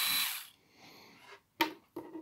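Vitek VT-2216 electric manicure handpiece motor running with a steady high whine and hiss, then stopping about half a second in. Two light clicks follow near the end.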